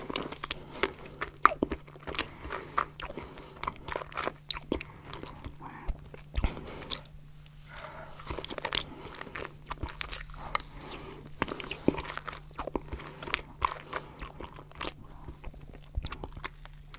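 Close-miked eating of stracciatella pudding with a metal spoon: wet mouth clicks and lip smacks, soft chewing and faint crunching of the chocolate flakes, in a steady stream of sharp little clicks.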